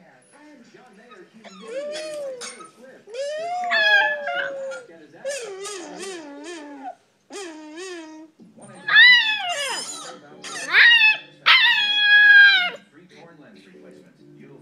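A young husky puppy howling in a string of rising-and-falling calls, some wavering, with the loudest and longest howls near the end.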